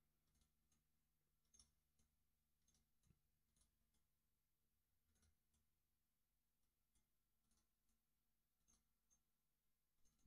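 Near silence, with very faint, scattered computer mouse clicks.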